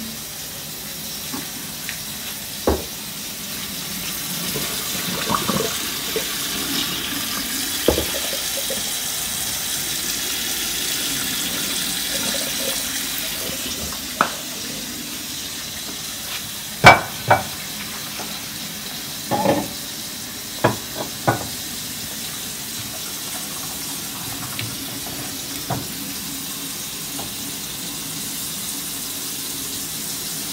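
Water running and pouring as a pot of boiled yams is drained, with sharp knocks and clatter of cookware and a serving utensil, the loudest a pair of knocks about halfway through.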